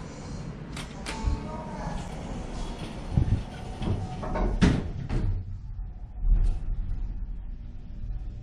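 Hydraulic elevator doors sliding shut with a few clicks and knocks and a loud clunk, then a low steady hum as the hydraulic pump runs and the car starts up.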